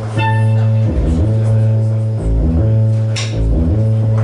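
Live band music starting up: a loud, sustained low bass tone that steps to a new note about once a second, layered with higher notes. A bright ringing note sounds at the very start, and a short hissy burst comes about three seconds in.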